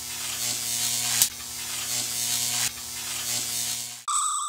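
An electric buzz: a steady low hum under a hiss, with a sharp crackle about a second in and a dip in level later on, cutting off abruptly at the end. It is a sound effect accompanying an animated logo.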